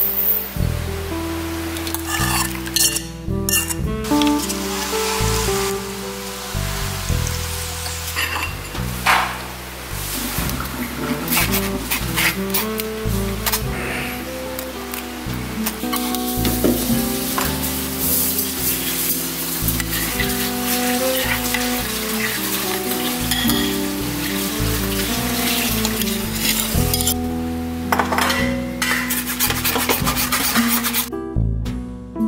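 Background music over a metal spoon scraping and stirring a thick cooked salted-egg mixture, scraping it from the pan and pressing it through a fine wire-mesh sieve, with frequent short scrapes and clinks.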